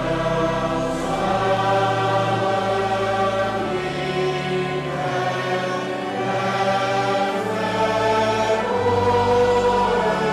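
Church congregation singing a hymn with organ accompaniment, the voices coming in at the start after an organ passage.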